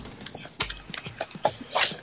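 A plastic-wrapped cardboard graphics-card box being handled and opened: scattered small crackles and clicks of wrap and card, with a brief scraping rush about three-quarters of the way through as the box comes open.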